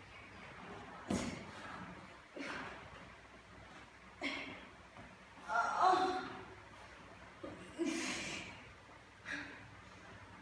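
A woman breathing hard from exertion during plank knee-to-elbow crunches: about seven short, forceful breaths one to two seconds apart, with one longer voiced groan about halfway.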